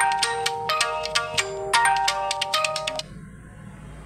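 A mobile phone ringtone playing a quick, bright melody of many notes, which stops abruptly about three seconds in.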